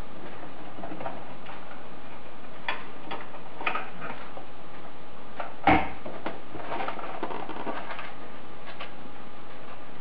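Scattered light clicks and taps of a car's centre console and trim being worked loose by hand, with one louder knock a little past halfway.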